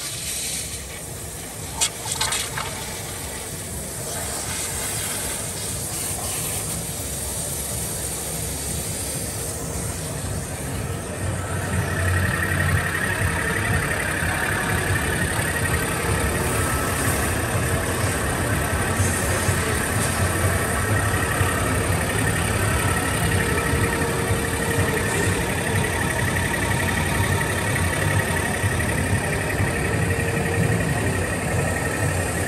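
Flow Mach 200 waterjet cutting machine running: an even hiss with a brief clatter about two seconds in. From about eleven seconds in, a louder, steady machine drone with a low hum and a high whine takes over.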